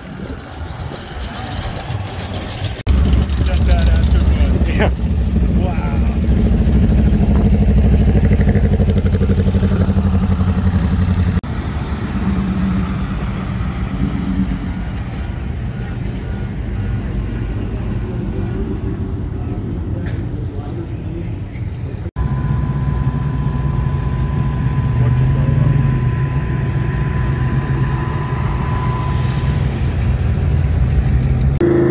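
Engines of classic cars and trucks running as they drive slowly past, in about three separate shots that change abruptly: a second-generation Chevrolet Camaro, a lifted Ford pickup, and a 1940s Ford sedan. A thin steady whine rides over the engine in the last shot.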